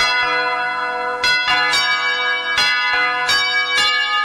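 Church bells pealing: about six irregular strikes, each ringing on and overlapping the last.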